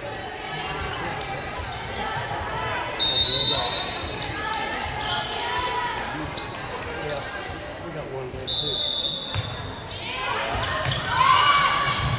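A volleyball referee's whistle blows briefly twice, about three seconds in and again near nine seconds, over voices echoing in a gym. A volleyball bounces on the hardwood court as the server gets ready.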